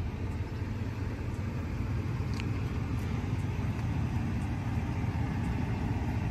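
Steady low rumble of motor vehicle noise, even in level throughout.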